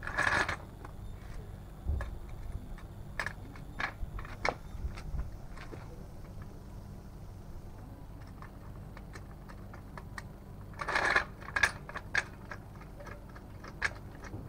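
Metal parts of a Goodyear 2-ton hydraulic trolley jack being handled as its handle is fitted into the socket: scattered clicks and knocks, with a short scraping rattle at the start and another about eleven seconds in.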